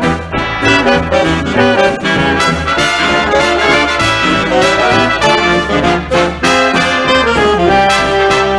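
Early big band jazz recording, with trumpets and trombones playing ensemble passages over a rhythm section.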